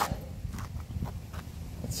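Quiet handling noise and a few soft footsteps on pavement as the rubber floor mats are carried, over a low steady hum.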